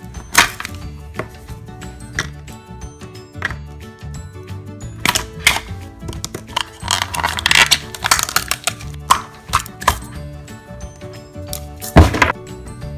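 Background music with sharp plastic clicks and knocks as a Play-Doh tub is handled: its snap-on lid is pried off, the loudest click about half a second in, and the dough is worked out of the tub, with rustling around the middle and another sharp knock at the end.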